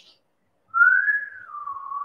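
A person whistling one note about a second and a half long: it rises slightly, then slides down to a lower pitch and holds there.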